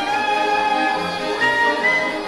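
Polish highlander (góral) folk band playing, with fiddles, accordion, double bass and bagpipe, in long held notes.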